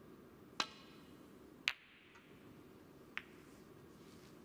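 Snooker balls clicking: three sharp clicks spaced roughly a second or more apart, the middle one loudest. These are the cue tip striking the cue ball, then the cue ball knocking into the reds, then a lighter ball contact.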